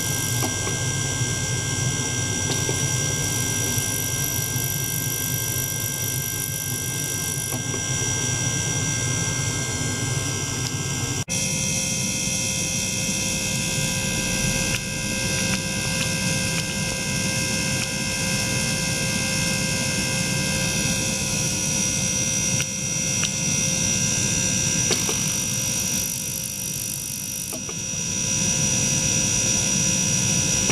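Small ultrasonic cleaner running with water in its tank: a steady noisy hum with several steady high whining tones on top. The tones change abruptly about eleven seconds in.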